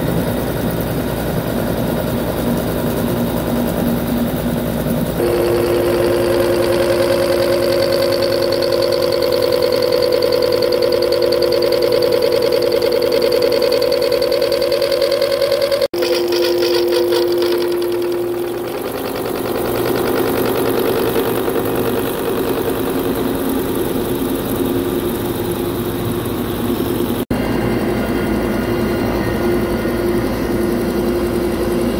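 Milling cutter on a horizontal boring mill taking a cut across a large steel block: a steady machining drone with a fast, even pulsing and a high whine held through the cut. The tone changes at two abrupt breaks, about halfway and near the end.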